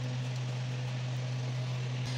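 A steady low hum with a faint even hiss, with no distinct clicks or knocks.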